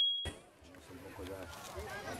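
A high, steady electronic notification chime from a subscribe-button animation fades out within the first quarter second. After a short lull, a faint voice starts talking over a low outdoor rumble about a second in.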